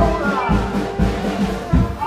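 Traditional jazz band playing live, a brass horn holding one long note over a steady beat of about two a second.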